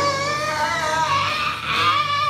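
Karaoke singing: a man holds one long note into a handheld microphone over a loud rock backing track with electric guitar.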